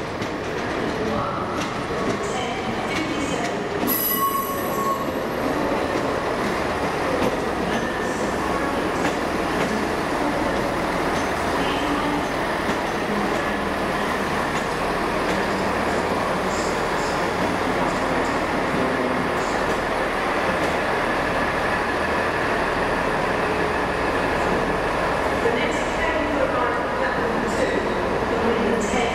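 Northern diesel multiple unit running slowly through the station: a steady diesel engine and rail noise, with a brief high-pitched squeal about four seconds in.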